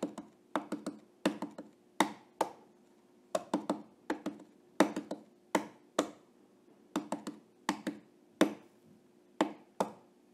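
A series of sharp taps or knocks at uneven spacing, about two a second and sometimes in quick clusters, over a faint steady hum.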